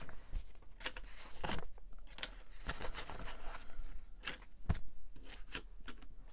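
Paper dollar bills being handled: short rustles and crinkles with light taps, several of them spaced irregularly.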